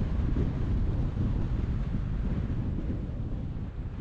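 Wind buffeting the camera microphone on a moving electric scooter: a churning low-pitched wind noise that eases slightly near the end. The noise comes from strong wind.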